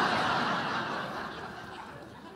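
An audience laughing at a punchline, the laughter dying away over the two seconds.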